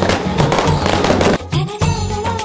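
Dense crackling of a ground fountain firework spraying sparks, heard over a music track. About one and a half seconds in, the crackling cuts off suddenly, leaving the music.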